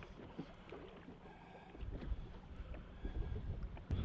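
Wind rumbling on the microphone in an open boat, growing stronger about halfway through, with a few faint knocks.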